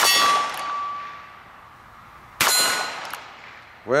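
Two shots from a .22 LR single-action revolver, each followed at once by a steel target ringing from the hit. The first comes at the start and the second about two and a half seconds in; each ring fades over about a second.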